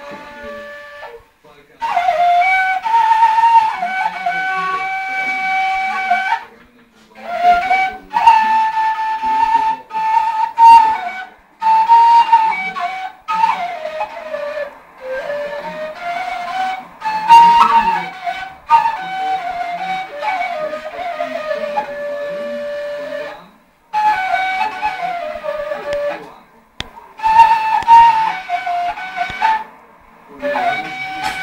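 A long end-blown wooden flute playing a melody in phrases of a few seconds each, broken by short pauses.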